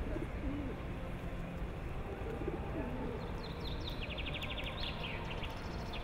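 Feral pigeons cooing in low, rolling calls, mostly in the first half. A small songbird chirps and gives a quick trill in the second half, over a steady low background noise.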